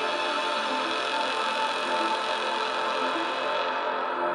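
Ambient background music: a dense chord of sustained tones held steady, with no beat.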